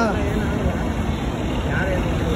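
Steady road traffic noise from passing vehicles, with faint voices talking close by.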